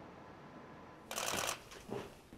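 A quiet stretch, then a single brief rustling, hissing noise about half a second long a little past the middle.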